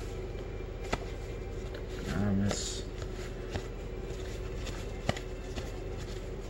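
A stack of 1984 Topps baseball cards being flipped through by hand, cardboard cards sliding off the pile one after another, with sharp clicks about a second in and again near the end. A short voice is heard about two seconds in.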